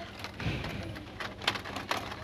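Plastic blister packs and cardboard backing cards of die-cast toy cars crackling and clicking as they are handled and flipped on store peg hooks, with a few sharper clicks in the second half.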